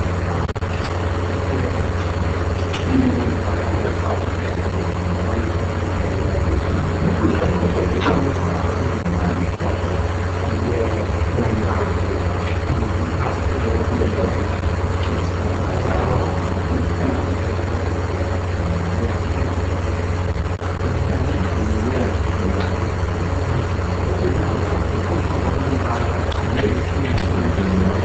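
A steady low hum with an even background hiss, unchanging throughout, with a few faint ticks.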